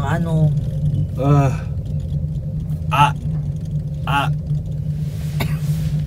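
Steady low rumble inside a gondola cabin riding down the cable, broken by a few short "ah" sounds from a person's voice and a single click near the end.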